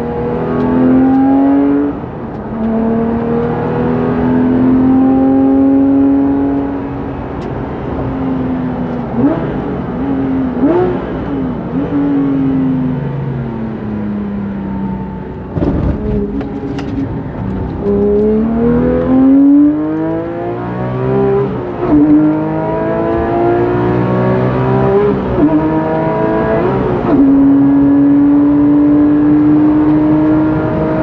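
Modified Porsche 997 GT3 RS Mk2's naturally aspirated flat-six, heard from inside the cabin at full throttle on track. The engine pitch climbs hard through the gears with sudden drops at each upshift, and it falls away with quick throttle blips on the downshifts under braking. A single broad thump comes about sixteen seconds in.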